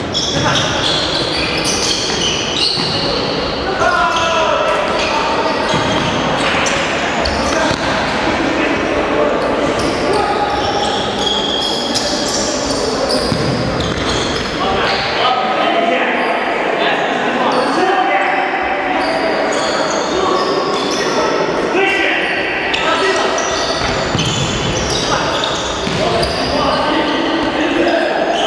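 Indoor futsal play in a large echoing hall: the ball is kicked and bounced on the wooden floor again and again, with players' voices calling out throughout.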